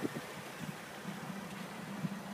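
Jeep Wrangler's engine idling with a steady low hum.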